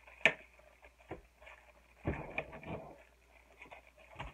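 Scissors cutting into a mailed package, with the packaging rustling: a sharp snip about a quarter of a second in, a few small clicks, and a stretch of crinkling around two to three seconds in.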